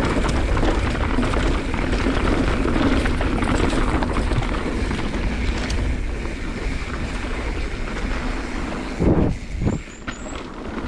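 Mountain bike rolling fast down a dirt trail, picked up by a handlebar-mounted action camera: wind rushing over the microphone, tyre noise on the dirt, and constant small rattles from the chain and bike over the bumps. Near the end come a couple of louder jolts.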